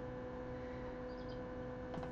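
Steady electrical hum at a couple of fixed pitches, with a few faint high chirps about half a second to a second in.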